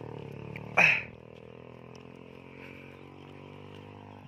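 Small motorcycle engine running steadily at low revs while riding a dirt track. About a second in there is a short loud cry that falls in pitch.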